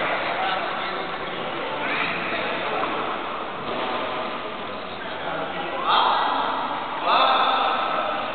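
Indistinct, unintelligible voices of people talking around a frontenis court, over a steady background hum, with a louder voice twice near the end; no ball strikes.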